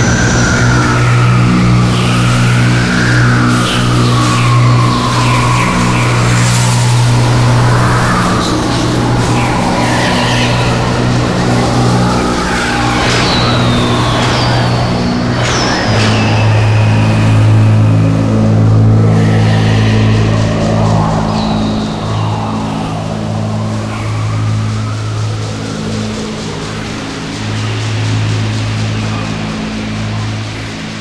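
An orchestra of indigenous South American wind instruments, large panpipes among them, playing a slow drone piece. A steady low drone holds throughout and steps to a slightly lower pitch about halfway. Above it, whistle-like tones slide up and down, with several high falling glides in the middle.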